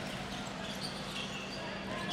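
Basketball arena ambience: a steady crowd murmur under a basketball being dribbled on the hardwood court.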